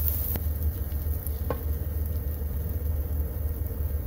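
Oyster mushroom strips frying in oil in a nonstick skillet, stirred with a plastic spatula that knocks against the pan twice early on. A steady low hum runs underneath.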